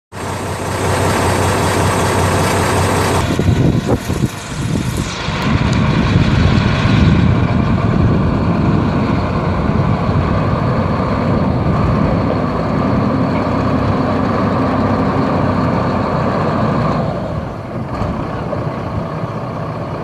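Cummins 8.3-litre six-cylinder turbo diesel in a 1995 Ford L8000 dump truck, running. It is steady at first, with a few sharp knocks about four seconds in, then runs louder from about five seconds until it settles back near the end.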